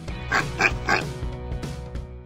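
Three quick cartoon pig oinks, about a third of a second apart, over a short music sting in an animated logo outro.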